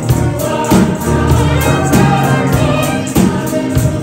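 Small gospel vocal group singing together in harmony, with a tambourine shaken and struck on a steady beat.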